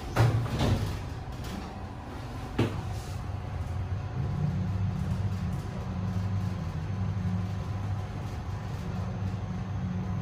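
A KONE TMS traction lift starting a trip: a couple of thuds from the car doors shutting in the first second, a click about two and a half seconds in, then a steady low hum as the car travels upward, heard from inside the car.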